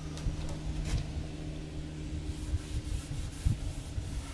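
Cloth rag rubbing paste wax onto a wooden tabletop edge, with a few small knocks, over a steady low hum.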